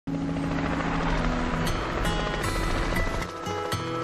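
Background music with held low notes over a steady rushing, rumbling noise; the rumble drops away about three seconds in, leaving lighter sustained notes.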